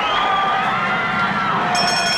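Fairground crowd noise with several long, held high tones over it that fade about a second and a half in; higher tones come in near the end.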